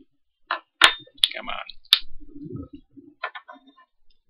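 Handling of a jelly cup while trying to tip the jelly out onto a plate: a few sharp clicks in the first two seconds with crinkling between them, and more crinkling a little past the middle.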